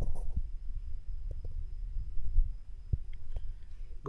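Low rumble and soft thumps of a handheld camera's microphone being jostled as it moves, with a few faint clicks and a thin steady high whine.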